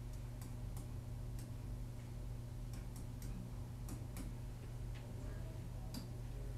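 Light, irregular clicks of a pen stylus tapping on a digital writing surface during handwriting, about a dozen in all, over a steady low electrical hum.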